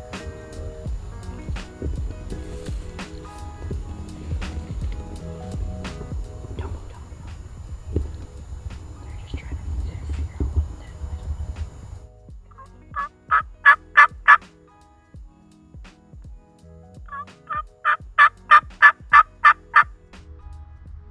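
Background music for the first two-thirds, then a wild turkey gobbling twice, loud and close: a rapid rattling call, the second one longer, near the end.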